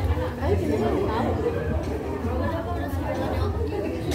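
Indistinct chatter of several voices talking over one another, steady throughout.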